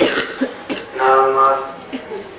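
A man speaking into a handheld microphone, with a short cough right at the start.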